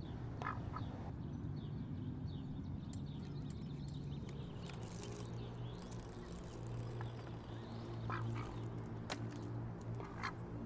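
White domestic duck quacking: two short quacks about half a second in and two more about eight seconds in, over a steady low hum.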